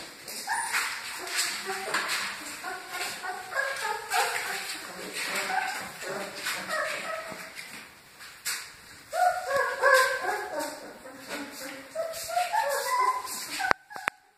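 Newborn Great Dane puppies whimpering and yipping, many short, high, wavering cries overlapping, growing busier in the second half. A sharp click sounds just before the end.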